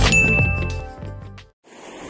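A bright ding sound effect, one high clear tone lasting under a second, rings out over the last notes of the channel's intro music, and both fade away to silence about three quarters of the way in.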